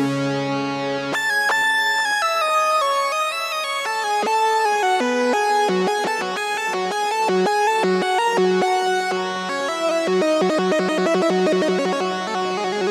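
Arturia CS-80 V4 software synthesizer playing a bright lead melody, its notes thickened by chorus and repeating through a ping-pong tape echo. Near the end, a quick run of short repeated notes.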